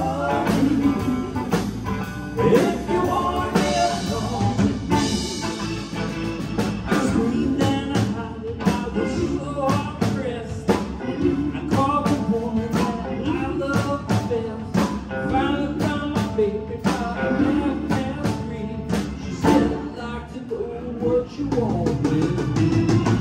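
Live rock band playing a blues-rock passage: drum kit, electric guitar and bass, with a steady beat.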